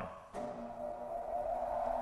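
Grizzly G0513X2B 17-inch bandsaw's 2 HP motor switched on and running up to speed: a steady hum that starts about a third of a second in and grows louder.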